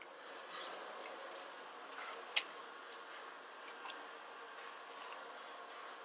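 Faint background noise with a few light, sharp clicks, the clearest two about two and a half and three seconds in.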